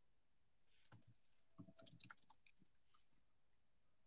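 Faint burst of quick computer clicks, a dozen or so over about two seconds starting a second in.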